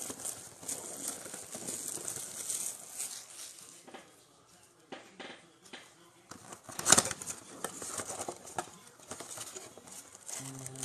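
Cardboard trading-card blaster boxes and foil card packs handled by gloved hands, rustling and crinkling unevenly, with a sharp knock about seven seconds in.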